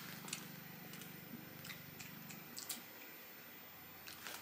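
Faint sounds of people chewing soft doughnuts: quiet mouth noises with a few small clicks, over a low hum that stops a little past halfway.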